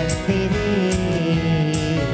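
Two acoustic guitars played live, strummed and picked through an instrumental passage of a gentle pop song.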